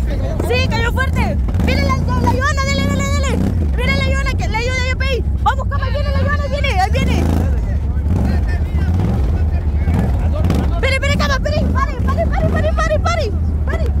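People shouting and cheering in long, rising and falling calls, with a gap in the middle, over a steady low rumble of wind buffeting the microphone.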